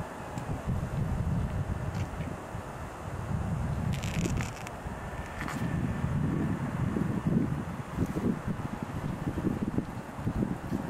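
Wind buffeting the camcorder microphone in uneven gusts, with a brief higher rustle about four seconds in.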